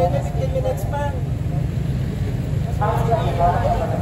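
Bystanders talking in short bursts over a steady low rumble of street traffic.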